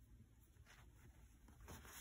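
Near silence: room tone, with only a few faint rustles of cotton fabric being handled.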